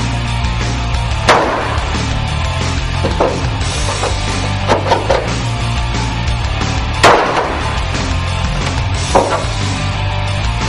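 Heavy metal music over sharp stabbing impacts of a fixed-blade knife punching through a metal drum, the loudest about a second in and at seven seconds, with smaller ones in between and near the end.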